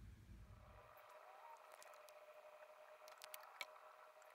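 Near silence: a faint steady background hum, with a few soft clicks late on.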